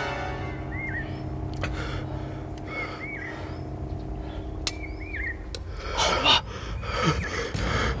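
Tense film score with held low drone notes and a short high figure that repeats about every two seconds; about six seconds in, the drone gives way to loud, heavy breaths.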